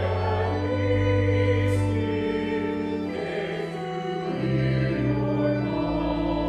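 Church hymn music with singing: held chords that change every second or two.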